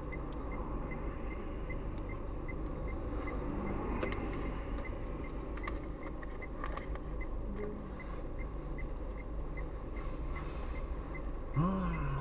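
Steady low hum inside a car idling at an intersection, with passing traffic and a faint regular ticking of about three ticks a second. A voice starts just at the end.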